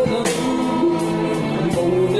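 Live band playing a pop song: a male singer over acoustic guitar, electric guitar and bass guitar, played through small combo amplifiers.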